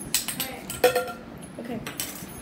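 A few short, sharp clicks and knocks of objects being handled on a table, the loudest just under a second in, followed by a short spoken "okay" near the end.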